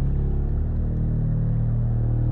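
A steady, loud low drone of several held tones, with a fine rapid pulsing in the lowest part from about half a second in.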